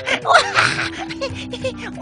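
A breathy, gasp-like voice sound at the start, then background music with a few long held notes.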